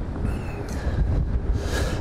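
Strong wind of around 65 mph buffeting an outdoor microphone: a loud, uneven low rumble.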